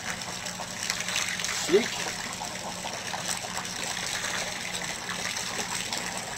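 A stream of urine pouring over a boat's side into the lake, splashing steadily on the water surface.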